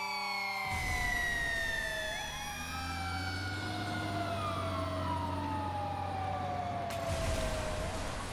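Fire engine siren wailing, its pitch sliding slowly down, back up, and down again, over a low steady engine rumble. A rush of noise comes in near the end.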